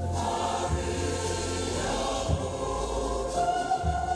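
A choir singing, with long held notes; a new sustained note comes in a little past the middle.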